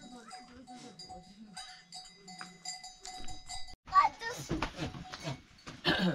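A small metal livestock bell clanking over and over in an uneven rhythm of short rings. About two-thirds of the way through it cuts off abruptly and voices follow.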